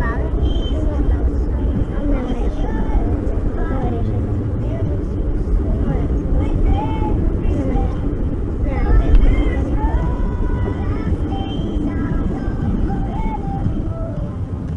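People talking inside a moving car's cabin, over the steady low rumble of the car driving.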